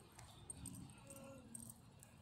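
Near silence, with a few faint, brief sounds and a short faint tone about a second in.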